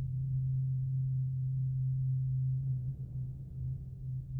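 A low, steady droning tone, gong-like, over a deeper hum. About two and a half seconds in, a faint higher layer joins it.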